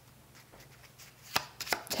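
Faint room tone with a low hum, then a handful of sharp clicks in the last part, the first and loudest about a second and a half in.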